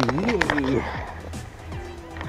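A voice calls out a drawn-out "yeay" over background music, then quiets in the second half.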